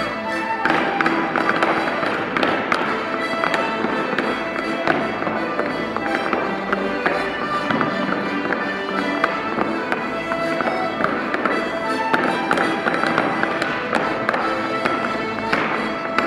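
Accordion playing a dance tune, joined about half a second in by the clatter of clogs stepping in time on the floor.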